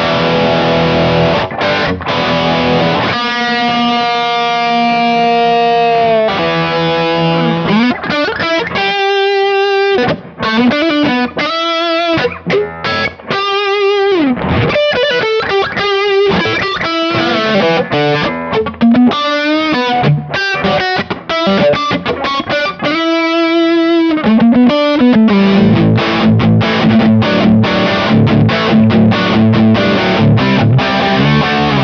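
Overdriven electric guitar: a Gibson Les Paul played through a Kemper Profiling Amp on a profile of a 1965 Fender Bassman at mid gain. It opens with ringing chords, moves into lead lines with held, bent notes and wide vibrato, and closes with repeated low rhythm chords.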